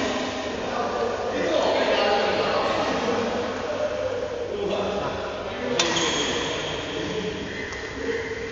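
Indistinct voices in a large sports hall, with a single sharp smack about six seconds in.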